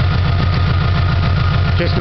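Subaru flat-four engine idling steadily, with a faint steady whine above the low engine hum.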